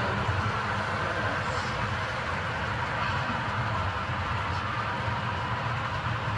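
Model train of woodchip hopper cars rolling past on the layout track: a steady rolling rumble of small metal wheels on rail that keeps an even level throughout.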